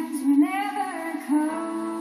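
A woman singing solo into a microphone, with long held notes that bend in pitch, over a soft steady instrumental backing, heard from a television.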